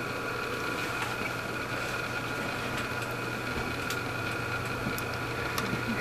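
Steady low hum with a faint hiss and a few faint steady high tones, unchanging throughout: background room tone.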